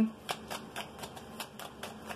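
A deck of tarot cards being shuffled overhand by hand: a quick, even run of soft card flicks, about five a second.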